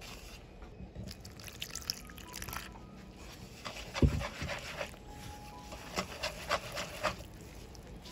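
A hand working wheat flour and water into batter in a clay pot: soft rustling and wet squishing, with one thump about halfway through.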